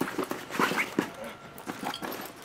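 A woman whimpering and sobbing in short, high catches of breath, mixed with a few light knocks and rustles.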